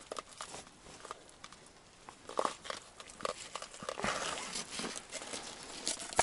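Scattered rustling, crinkling and small clicks of gloved hands handling a dead burbot and its setline line on snow-covered ice.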